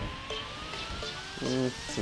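A faint tone gliding slowly and steadily upward in pitch, with a couple of short murmured vocal sounds.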